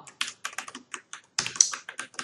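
Computer keyboard typing: a quick, irregular run of keystrokes while code is edited and lines are commented out.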